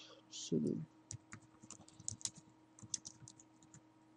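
Typing on a computer keyboard: a quick run of short keystroke clicks over about three seconds as a terminal command is entered. A brief murmur of voice comes just before the typing starts.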